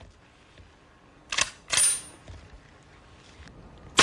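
Two sharp metallic clicks about half a second apart, from the action of a Browning Auto-5 shotgun being worked just before it is fired.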